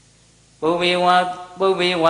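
A Buddhist monk's voice through a microphone, reciting in a chanting tone. It starts about half a second in after a short pause, with a brief break just before the end.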